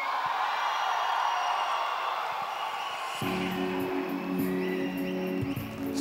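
Stage walk-on music playing: a hazy, sustained wash for the first few seconds, then a steady low bass part comes in about three seconds in.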